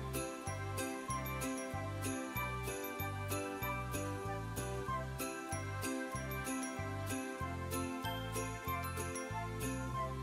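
Background music with a steady bass beat, about two notes a second, and bright high percussion on the beat.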